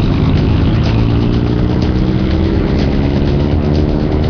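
A car engine running amid street traffic.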